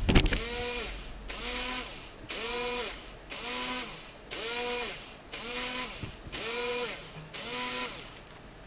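Small yellow plastic DC gearmotors of a Raspberry Pi robot, driven through L293D chips, running in short whirring bursts of about half a second with equal pauses, about one burst a second. Each burst rises and falls in pitch as the motors spin up and wind down, while the test program steps through forward, reverse, left and right. A knock near the start.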